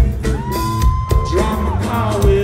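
Live rock band playing a song at full volume: drums, bass and guitars, with one long high held note through the middle, heard from among the crowd.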